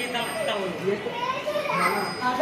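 Several children's voices talking and calling over one another, with no clear words.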